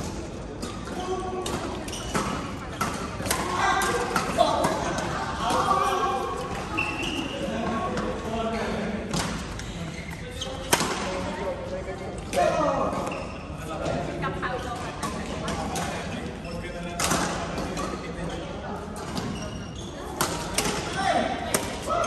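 Badminton rackets striking a shuttlecock, with sharp cracks at irregular intervals that echo in a large sports hall.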